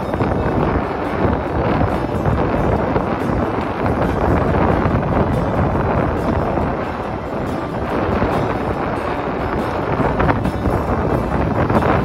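Wind buffeting the phone's microphone: a loud, steady rush of noise with no clear tones.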